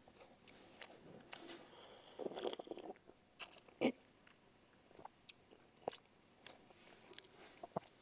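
A person chewing a mouthful of pempek, a chewy Palembang fish cake: faint mouth and chewing sounds with a few small clicks.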